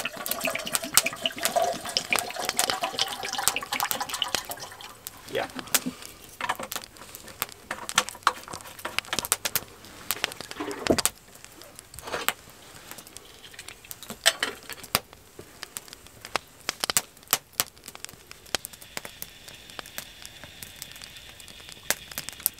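Water poured from a bottle into a small metal kettle, a rising tone as it fills over the first few seconds. Then a wood fire crackling under the kettle with scattered sharp pops.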